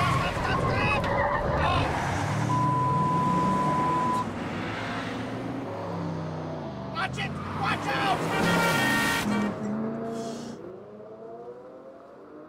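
Chevrolet Camaro driven hard, engine revving and tyres squealing as it slides, with pitch rising again near the end. A steady electronic beep lasts about a second and a half a few seconds in.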